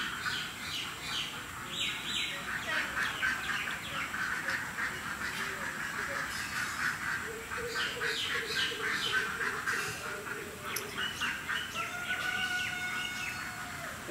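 Birds calling: a busy run of many short, rapidly repeated calls, with a longer held call near the end.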